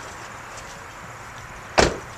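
The driver's door of a 2002 Chevrolet Silverado pickup slammed shut once, a single loud thump near the end.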